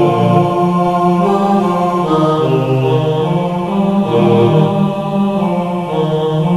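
Sanskrit devotional verses chanted by samanis (Jain nuns) in a slow melody of long held notes that step and glide between pitches.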